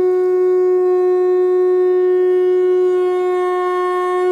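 A conch shell (shankha) blown in one long, loud, steady note.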